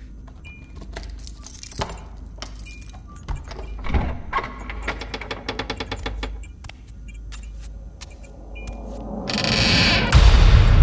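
A bunch of keys jangling, with small metallic clicks and a quick run of rattling ticks in the middle. Near the end a rush of noise swells up.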